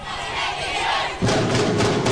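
Many voices shouting together, then about a second in the loud drum-driven music of the dance accompaniment cuts in suddenly.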